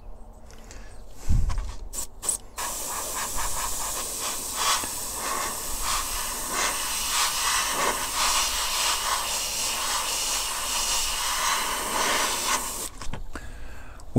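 Airbrush spraying black primer: a few short hissing bursts, then a steady hiss of air and paint for about ten seconds that cuts off about a second before the end. A low thump comes between the early bursts.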